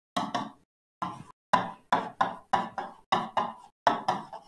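Stylus tip knocking against the glass of an interactive display screen as words are handwritten on it: about ten sharp, irregular taps, each dying away quickly.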